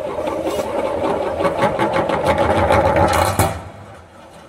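An object rolling round the inside of a metal gravity-well funnel, a fast continuous rattling whirr that grows a little louder, then stops abruptly about three and a half seconds in as it falls into the centre hole.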